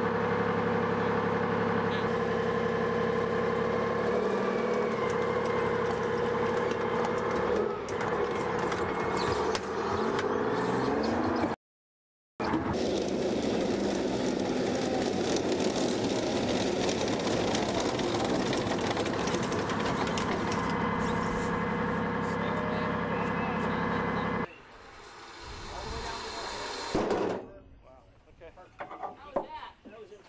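Diesel engine of a tracked armored personnel carrier running steadily after start-up; after a brief cut about twelve seconds in, the vehicle is driving, its engine mixed with rattling track noise, until the sound drops away with a cut a little before the end.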